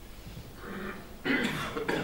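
A man coughs once, about a second and a quarter in, after a brief quiet moment.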